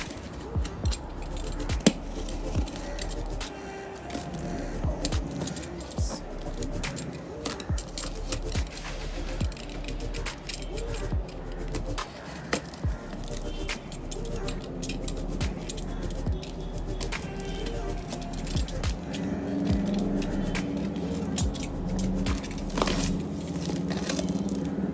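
Snap-off utility knife slicing and scraping through plastic packing tape and cardboard, with many short sharp clicks and scrapes, over background music.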